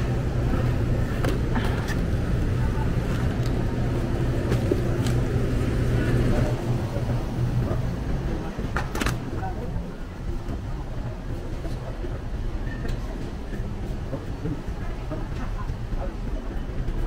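Supermarket shopping trolley rolling over a tiled floor: a steady low rumble that eases about halfway through, with a few short metal clatters.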